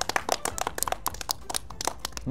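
A few people clapping their hands, a quick, uneven patter of claps.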